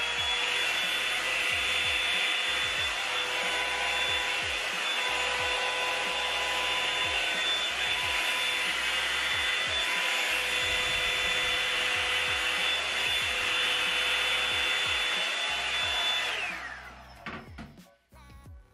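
Revlon One-Step hot-air dryer brush running. Its motor whine rises as it comes up to speed, then holds a steady high whine over the rush of air. It winds down and stops about sixteen and a half seconds in.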